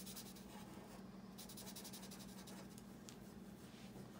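Faint scratching of a marker colouring on paper in quick back-and-forth strokes.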